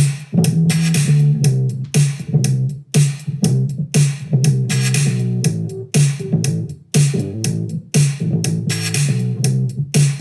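A drum loop and a dirty bass loop in E minor playing back together at 120 beats per minute, with a steady beat of about two hits a second. The 118 BPM bass loop is flexed to follow the project's bars and beats so that it locks to the drums.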